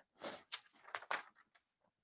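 A sheet of tracing paper being handled and shifted over a card: a few brief, soft rustles and a small click in the first second or so.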